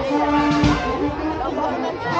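Brass band music with long held notes, mixed with the chatter of a crowd of adults and children.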